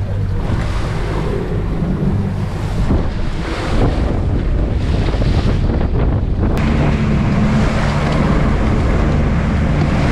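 Bay boat's outboard engine running under way at speed through rough chop, with water rushing and slapping at the hull and wind buffeting the microphone. The engine note shifts suddenly about two-thirds of the way in.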